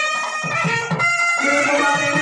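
Music from a reed wind instrument holding a sustained melody over low drum strokes.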